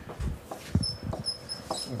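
Dry-erase marker squeaking on a whiteboard while writing: a run of short, high squeaks in the second half, after a few soft knocks.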